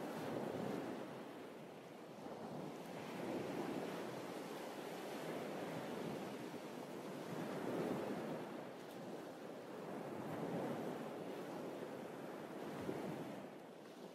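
Small waves washing up on a sandy beach: a steady hiss of surf that swells and ebbs every two to three seconds.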